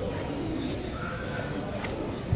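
Low background murmur of voices echoing in a large sports hall, with a faint brief high tone about a second in and a light tap near the end.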